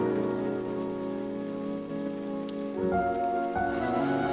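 Lo-fi hip hop outro with no drums: soft, held electric-piano chords over a steady loop of rain sound, with the chord changing a little under three seconds in.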